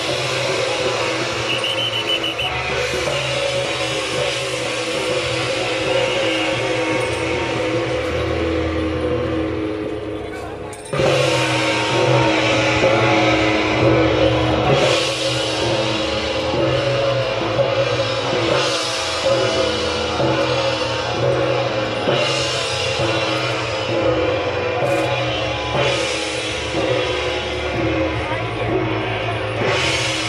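Taiwanese temple-procession percussion ensemble of gong, hand cymbals and drum playing loud, continuous ringing music, with struck accents about every three to four seconds. It thins briefly about ten seconds in, then comes back in louder.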